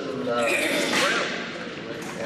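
Voices of several people talking at once, words indistinct, with a short rush of noise in the first second.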